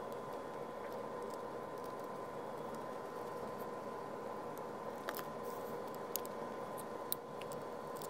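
A few small sharp clicks of 3D-printed plastic robot parts being handled and fitted together, mostly in the second half, over a steady faint hum.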